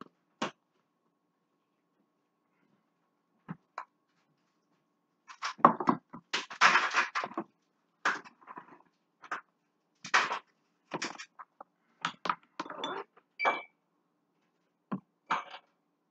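Wooden spoon and silicone spatula scraping thick brownie batter out of a plastic mixing bowl: a run of irregular short scrapes and knocks, busiest about six to seven seconds in, with a brief squeak near the end.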